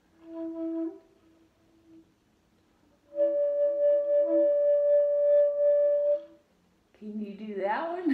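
Shakuhachi bamboo flutes: a short note about a second in, then one long held note of about three seconds, with a lower tone sounding under it at first. Near the end a voice breaks in.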